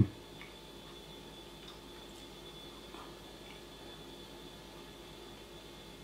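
Quiet room with a faint steady hum, broken by a few faint, short clicks of a knife and fork working at food on a plate.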